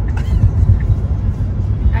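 Steady low road and tyre rumble inside the cabin of a moving Tesla Model 3, with no engine note.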